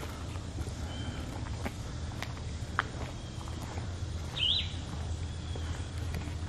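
Footsteps on a concrete path, a few scattered clicks, over a steady low outdoor hum, with one short bird chirp about four and a half seconds in.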